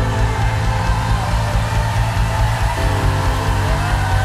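Loud live worship band music, mostly held low chords with no clear drum beat.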